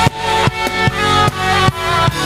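Live worship band music with no singing: held chords over a steady drum beat of about two and a half beats a second.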